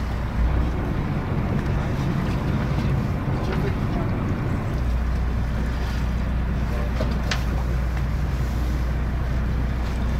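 Steady low hum of a whale-watching boat's engine, with wind noise on the microphone. The deepest part of the hum fades about a second in and comes back strongly a little before the middle.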